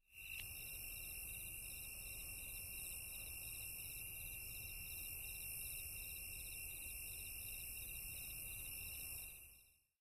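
Faint chorus of night insects: several steady high-pitched chirping tones, one of them pulsing in rapid trills, fading out about nine seconds in.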